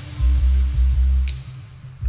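Background electronic music with a deep, pulsing bass that eases off about halfway through.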